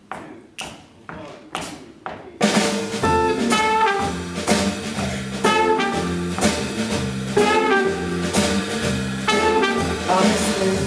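Sharp clicks counting time at about two a second, then about two and a half seconds in a small jazz band enters all at once: drum kit, bass line, electric guitar and trumpet playing an up-tempo, swinging intro.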